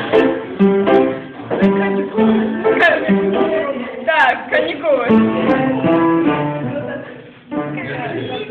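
Guitar music: a run of plucked notes played one after another, with a voice gliding over it briefly about four seconds in.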